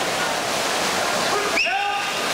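Steady wash of water splashing from swimmers racing, with crowd noise echoing around an indoor pool hall. Near the end, a sudden high-pitched shout cuts in over it.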